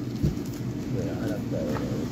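A bird cooing twice in low, soft calls in the background. There is a thump near the start.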